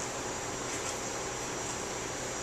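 Steady room tone: a constant hiss with a low hum underneath and no distinct sounds standing out.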